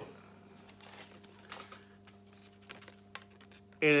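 Faint handling of plastic lacrosse heads, a few light clicks and taps, over a steady low electrical hum; otherwise near silence.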